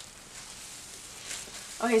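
Faint crinkling rustle of clear plastic disposable gloves as the hands move, followed by a spoken word near the end.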